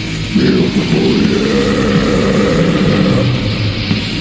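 Black/death metal with distorted guitars, from a lo-fi cassette demo recording with a dull top end.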